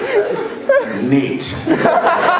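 Speech and chuckling: voices talking with people laughing, and a short hiss about midway.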